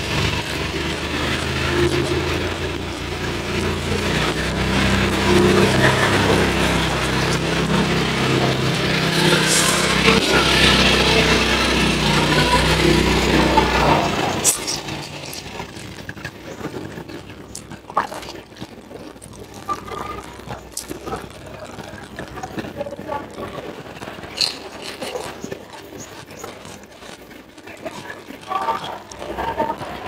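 Close-miked eating: chewing and mouth clicks while eating raw red tilapia and fresh greens, scattered through the second half. For the first half a louder backing sound with low notes that change in steps covers it, then cuts off about halfway.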